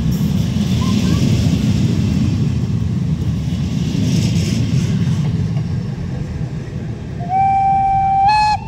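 Passenger coaches of a departing train hauled by an ÖBB class 1020 electric locomotive roll past at low speed, a steady rumble of wheels on track that eases toward the end. Near the end the locomotive's horn sounds one held note.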